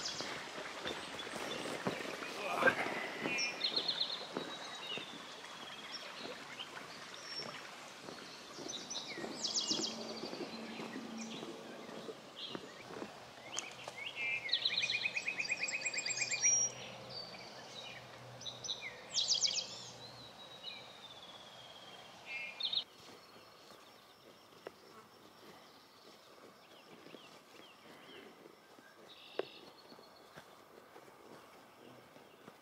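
Songbirds singing in repeated short phrases and trills over faint footsteps on a wooden boardwalk; the birdsong fades after about three quarters of the way through.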